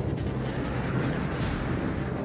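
Steady low rocket-engine rumble under background music, with a brief rush of hiss about one and a half seconds in.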